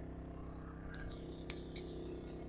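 A steady low mechanical hum, with two light clicks near the end: a small blade scraping and catching on a sticker on a motorbike's plastic fairing.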